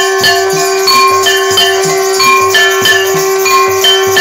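Indian devotional aarti music: a steady held drone under a ringing, bell-like melody, with a drum beat about three times a second.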